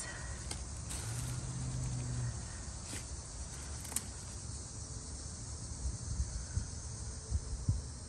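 Quiet outdoor background of steady faint hiss and low rumble, with a brief low drone about a second in. A few light clicks and rustles come from handling bean vines while purple teepee bean pods are picked.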